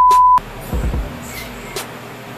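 A steady 1 kHz test-tone beep, the tone that goes with TV colour bars, cutting off suddenly less than half a second in. Background music with a low beat follows.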